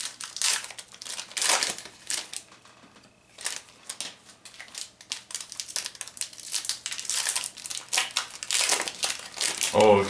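Crinkling of a foil trading-card pack wrapper being torn open and handled: irregular crackles that come and go.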